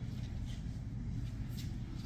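Steady low room hum, with a couple of faint handling noises as a surgical light head is turned on its mounting arm, about half a second in and again near the end.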